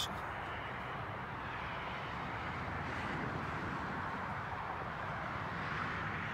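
Steady outdoor background noise: a low, even rush with no distinct events, swelling slightly in the middle and again near the end.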